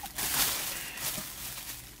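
Paper rustling and crinkling as a wrapped gift is opened, loudest in the first half second and dying away.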